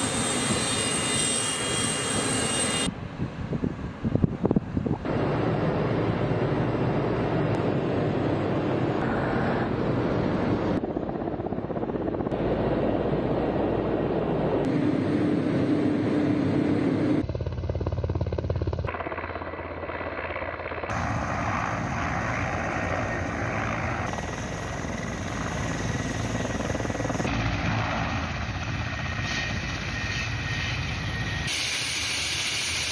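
Mi-8 and Mi-24 military helicopters, turbines and rotors running, heard over a series of short airfield clips. The sound is steady within each clip and changes abruptly at each cut, with a deeper hum for a few seconds about two-thirds of the way in.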